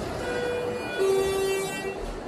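Elevator's electronic direction chime sounding two tones, a higher one then a lower, louder one about a second in. The two strokes are the usual signal that the car is going down.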